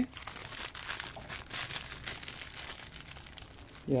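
Plastic packaging crinkling as it is handled, with irregular faint crackles throughout.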